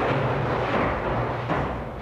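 Aircraft-carrier arresting gear machinery in the arresting gear engine room running loudly, played from a vinyl sound-effects record. About one and a half seconds in comes a thump, and the noise then dies down.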